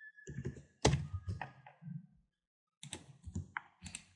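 Computer keyboard keys tapped in two short irregular bursts of keystrokes, with a pause between them.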